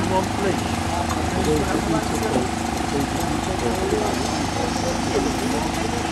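Heavy construction machinery engines running steadily in a low, even drone, with workers' voices talking over it.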